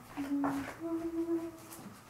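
Someone humming a tune without words: a short note, then a slightly higher note held for about a second.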